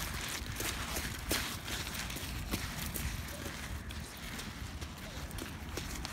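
Footsteps crunching on wet beach pebbles, an uneven series of sharp crunches a few times a second, over a low steady rumble.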